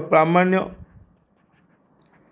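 A voice speaking for a moment, then near silence.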